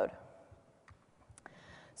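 Two faint clicks about half a second apart during a pause in a lecture, a computer click advancing the presentation slide, against low room tone.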